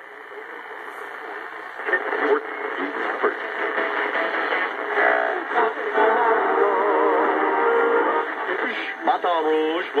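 Packard Bell AM portable radio being tuned by hand across the band: static and snatches of station speech and music through its small speaker. The sound grows louder over the first couple of seconds, and sliding whistles come near the end as the dial passes a station.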